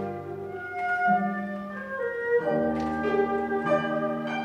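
Chamber ensemble of guzheng, erhu, flute, piano and cello playing a slow, lyrical piece. Long held melody notes move to a new pitch about every second over a sustained low cello note.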